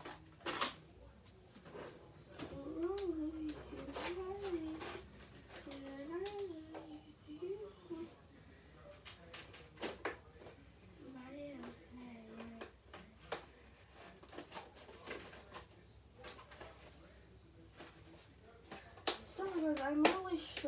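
A child's voice in the background, wavering in pitch without clear words, with scattered short clicks and rattles of small items being handled.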